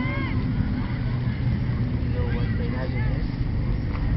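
Steady low rumble of outdoor background noise, with faint voices in short snatches near the start and again in the middle.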